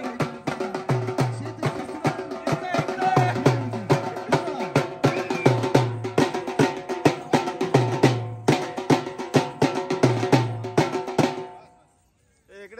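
Live dhol drumming in a fast, steady rhythm, with sustained pitched notes running under the drum strokes. The playing breaks off near the end.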